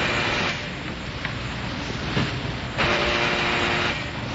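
Radio-drama sound effects: a steady background of street traffic with a click and a knock, then an electric doorbell buzzer sounding for about a second near the end.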